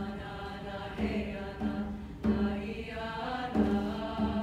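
Treble choir singing a repeated chant-like phrase over a held low note, with accents about every 1.3 seconds where a low hand-drum beat falls.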